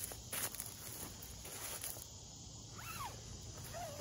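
Footsteps and rustling on dry leaf litter, a few short crackles in the first couple of seconds, over a steady chorus of insects. A brief falling whistle sounds about three seconds in.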